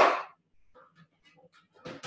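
Two short breathy bursts about two seconds apart, the first the loudest. Between them come faint clicks and scrapes of a teaspoon pressing soft cheese filling into baby peppers.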